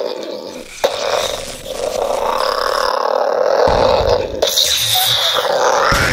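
A long, rough monster roar with no words, with a sharp thud about a second in and a deep rumble joining it after about four seconds.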